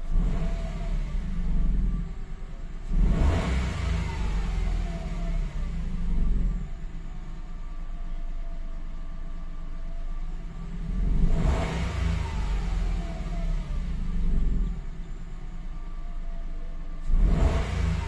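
A 2017 Mitsubishi Mirage G4's three-cylinder engine idling, then revved three times. Each rev rises sharply and falls back to idle. The engine has stored codes for a cylinder 3 misfire and a low injector circuit, and it is being free-revved to check for the misfire.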